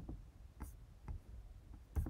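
A few faint, scattered taps on a computer keyboard, about one every half second, with a sharper click near the end.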